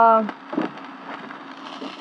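A fish fillet sizzling on a cast-iron griddle over a grill: a soft, even hiss with small crackles, after a drawn-out spoken 'uh' in the first quarter second.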